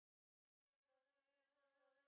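Near silence: the gap between two songs in a music compilation.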